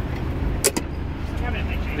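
Steady low rumble of street traffic, with one sharp click about two-thirds of a second in and faint voices near the end.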